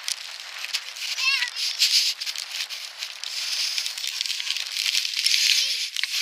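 Steady hiss with fine crackling and rustling close to the microphone, and a small child's brief high-pitched vocal sound about a second in.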